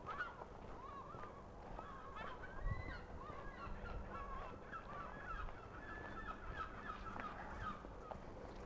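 Geese honking: many short, overlapping calls throughout, fairly faint.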